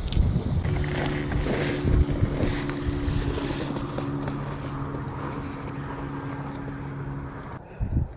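An engine running at a steady speed, slowly growing fainter and cutting off shortly before the end, with some wind on the microphone.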